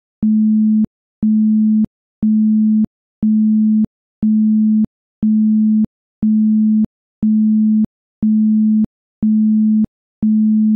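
A 216 Hz isochronic tone: one low, steady tone pulsing on and off about once a second. Each pulse lasts about two-thirds of a second, with a faint click at each start and stop.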